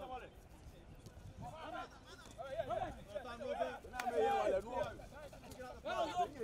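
Players' voices shouting and calling across a football pitch, rising about two seconds in, with one sharp knock about four seconds in.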